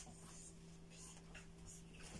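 Near silence: a steady low electrical hum, with a few faint, short rustles of fabric being handled.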